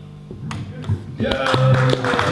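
Stage keyboard playing a short held note, with scattered hand claps starting about a second in.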